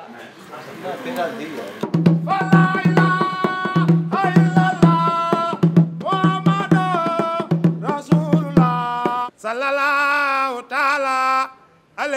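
A man singing with a small hand drum struck with a curved stick. His voice holds long notes that step up and down in pitch over drum strikes, starting about two seconds in, with a brief break near the end.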